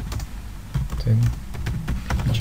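Typing on a computer keyboard: a steady run of quick keystrokes as a short feedback comment is entered.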